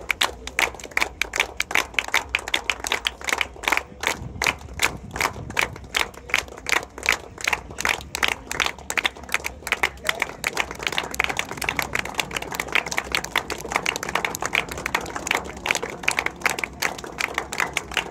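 A small group of people clapping their hands in applause: a quick, uneven run of distinct claps that keeps going.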